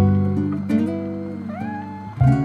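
Soft acoustic guitar music, and over it near the end a single short cat meow that rises in pitch and then holds.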